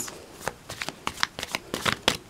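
A deck of oracle cards being shuffled by hand: a quick, irregular run of soft snaps and clicks, the loudest near the end.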